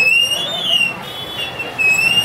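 A high whistle-like tone in short melodic phrases of about a second each, gliding up and down, with a break near the middle.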